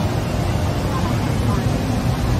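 Busy street ambience: voices of passers-by over a steady low rumble, with no single event standing out.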